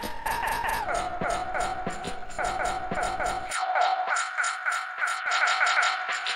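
A sample-based beat played back from an Elektron Octatrack MKII sampler: a fast, busy chopped drum break with pitched sample tones under it. About halfway through, the bass and low end drop out suddenly.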